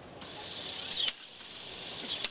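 A steady hiss of compressed air, with a short sharp squeak falling in pitch about a second in.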